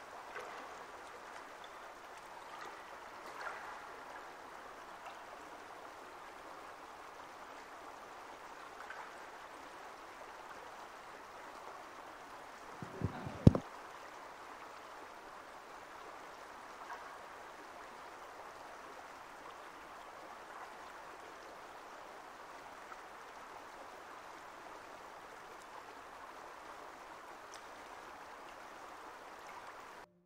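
A stream of running water, steady throughout. A brief, loud double thump about thirteen seconds in.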